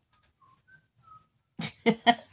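Four faint, short whistle-like notes at slightly different pitches, then about a second and a half in a sudden loud burst of a woman's laughter.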